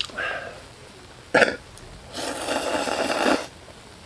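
A person eating ramen noodles: a short slurp at the start, a sharp click a little over a second in, then a long slurp of noodles and broth lasting about a second.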